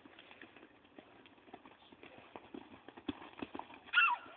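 Hoofbeats of a ridden horse on turf: faint, irregular thuds that grow louder and closer together in the last second. A brief pitched sound that bends in pitch comes right at the end.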